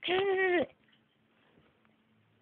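A child's voice holding one sung 'daaa' note for under a second, steady in pitch and dropping at the end, closing a 'da da da' tune; then near silence.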